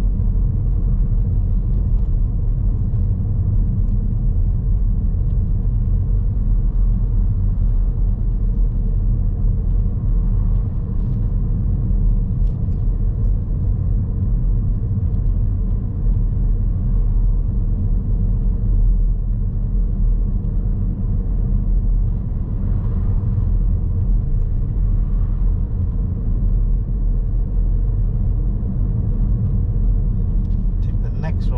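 Steady low rumble of a car driving along a town road, heard from inside the cabin: engine and tyre noise at an even cruising pace.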